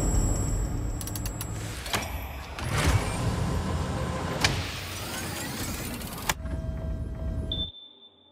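Sci-fi film sound design: a loud low rumble and hiss of machinery venting vapour, with mechanical whirs and a few sharp clanks. It thins out to faint steady tones and then cuts to near silence near the end.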